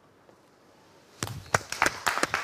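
Studio audience starting to applaud at the end of a solo viola piece: a faint stir, then scattered claps from about a second in, quickly growing denser.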